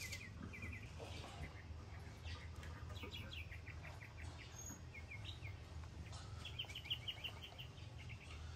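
Small bird chirping faintly in short, rapid trills, repeated every second or so, over a steady low hum.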